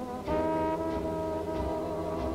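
Big band dance music from an army dance orchestra: the brass section holds a long chord over a steady low beat.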